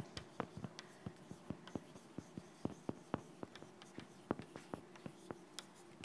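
Chalk writing on a blackboard: a faint string of quick, irregular taps and short scratches, several a second, as symbols are chalked up.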